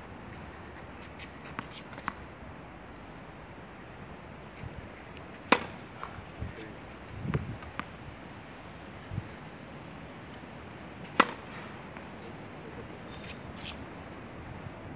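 Tennis ball struck by a racket twice, two sharp pops about five and a half seconds apart, with softer knocks of the ball between them, over a steady open-air background.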